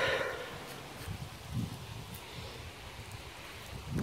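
Quiet outdoor ambience: faint wind on the phone's microphone and light rustling, with a couple of soft low thumps near the middle.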